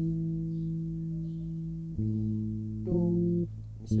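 Electric bass guitar on old strings playing sustained notes: one long ringing note, then a new note about two seconds in and another about a second later, cut short just before a fresh note at the end.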